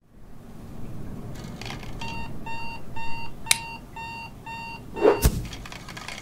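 Cartoon alarm clock sound effect: an electronic alarm beeping about twice a second for a few seconds, then a loud thump as a hand slaps it off.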